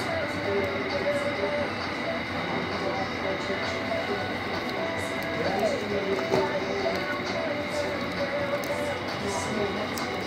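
Railway station ambience: a steady electrical hum and high whine, as from parked electric trains, with indistinct distant voices.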